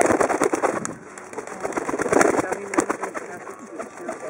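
A white dove flapping its wings close by, a rapid flurry of wingbeats in two bursts, one right at the start and another about two seconds in.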